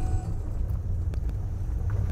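Steady low rumble of engine and road noise inside a car's cabin as it drives along a village road, with a few faint light ticks.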